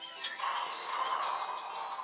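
Horror-film trailer soundtrack music playing from a laptop: a brief click about a quarter second in, then a steady sustained drone.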